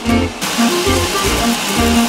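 Background music with a steady bass beat and melodic notes.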